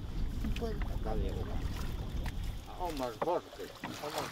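Wind buffeting the microphone: an uneven low rumble that dies down about three seconds in.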